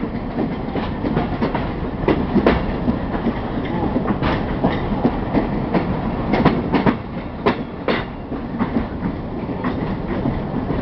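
Passenger train running, heard from inside a carriage at an open window: a steady rumble with frequent irregular clacks and knocks of the wheels over the rail joints.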